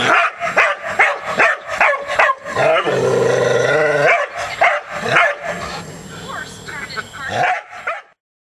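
A dog barking rapidly and repeatedly at an opossum, loud short barks in quick succession, with one longer drawn-out call about three seconds in.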